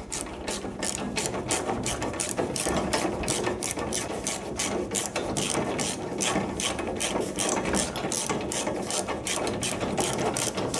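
Hand ratchet wrench clicking in a steady, rapid run of sharp clicks as it is swung back and forth, running a bumper-bracket bolt in by hand.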